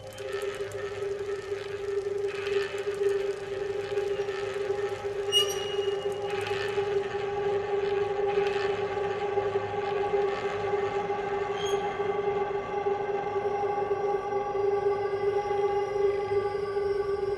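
Acousmatic electroacoustic music: a steady drone of several held tones throughout, with noisy rustling swells rising and falling over it in the first part before it settles to the drone alone.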